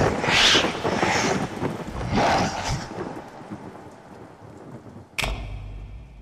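Storm sound effects from a projection show's soundtrack: swells of thunder-like rumble and rain-like hiss that fade over the first few seconds, then a single sharp crack about five seconds in with a low rumble after it.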